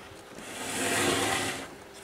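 Hands sweeping up a stack of plastic speed cubes, a rustling noise that swells to a peak about a second in and fades away.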